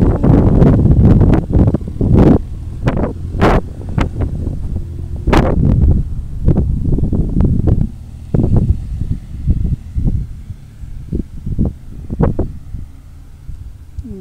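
Wind buffeting the microphone in irregular gusts, heaviest in the first half and easing off, over the low running of a campervan's engine as it drives slowly across the grass.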